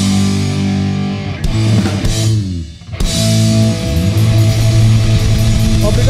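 Punk rock band playing live: distorted electric guitars, bass and drum kit holding heavy chords. A little before halfway the sound drops away briefly with sliding notes, then the whole band comes back in together.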